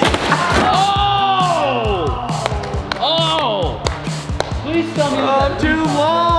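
Upbeat background music with a steady drum beat, over men shouting and whooping with drawn-out calls that rise and fall in pitch, about a second in, near the middle and near the end.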